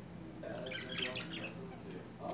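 Pet budgerigars warbling and chirping, with a quick run of high chirps in the middle.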